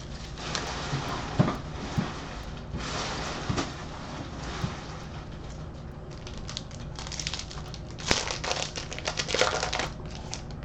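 Foil trading-card pack wrappers crinkling while cards are slid and handled, in irregular bursts with a few sharp clicks. The crackling is loudest and densest near the end.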